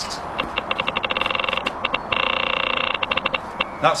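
Geiger counter clicking, the clicks quickening into a continuous buzz for about a second and then thinning out again: a radiation detector reading a strongly active sample.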